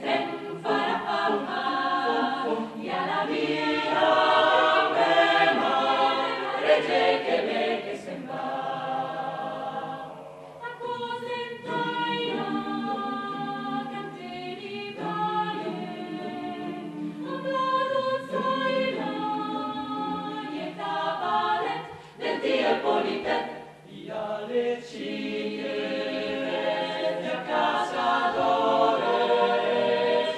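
Mixed choir of men's and women's voices singing a cappella in several parts, with brief quieter moments about ten seconds in and again near the end.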